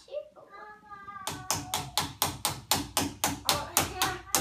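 A child's sung phrase, then from a little over a second in a rapid run of even knocks, about four a second, as the child taps on a wooden banister spindle in pretend construction work.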